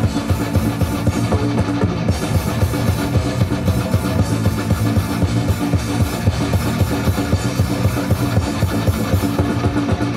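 Metal band playing live through a stage PA: electric guitars, bass guitar, keyboards and a drum kit keeping a steady driving beat, in an instrumental passage with no vocals.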